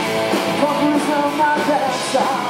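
Live rock band playing: a male lead vocal singing held, sliding notes over loud electric guitars.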